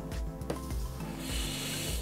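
Background music, with a large cardboard box rubbing as it is slid on a tabletop, a soft scrape from a little past halfway to the end.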